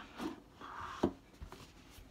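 Cardboard game box being slid out of its cardboard slipcover: a faint rubbing scrape, then a light knock about a second in.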